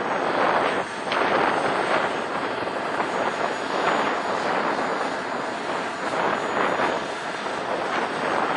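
The small gas-turbine engine of a radio-controlled F-16 model jet running steadily on the ground. It makes a loud, even rush with a faint high whine.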